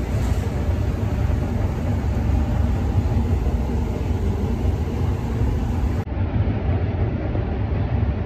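Loud, steady rumbling noise with a hiss over it. About six seconds in the hiss turns duller.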